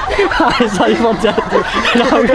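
Young men laughing and chuckling together, with bits of talk mixed in.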